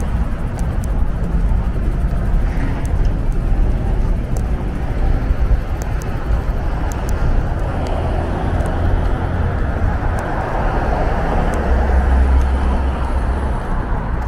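Outdoor street ambience: steady road traffic noise with a heavy low rumble throughout.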